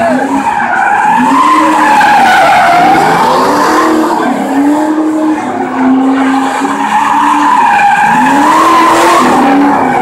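A car doing donuts, its engine held at high revs and swelling up and down every second or two, over the continuous screech of spinning tires.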